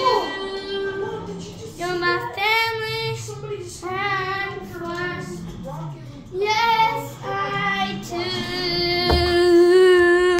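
A child singing a wordless, melodic tune in short phrases with pauses, ending on a long held note. A brief low thump comes about nine seconds in.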